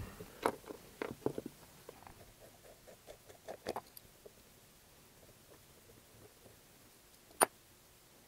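Faint small metal clicks and taps from handling a miniature V-twin model engine as a cylinder head and its push rods come off, busiest in the first half, with one sharper click near the end.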